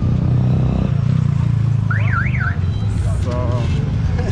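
A short electronic warbling tone, like a car alarm, rising and falling twice in under a second about two seconds in, over a steady low rumble of street noise.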